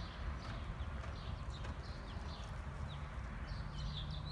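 A horse's hoofbeats on soft arena dirt as it moves under a rider, slowing to a walk, over a steady low hum.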